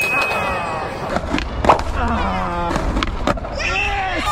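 Skateboard deck and wheels knocking and clattering on concrete steps, with a few sharp hits, and voices over it.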